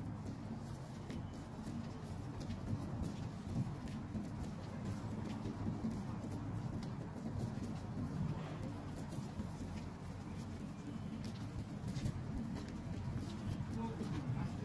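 Steady low outdoor rumble with faint, irregular clicks scattered through it.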